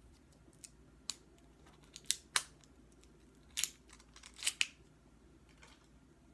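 Plastic wrap crinkling and tearing in short, sharp bursts as it is peeled off a small snuff tin.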